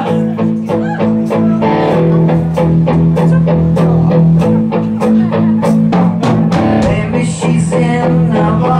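Live rock band playing: electric guitars, bass guitar and drum kit, with a steady beat.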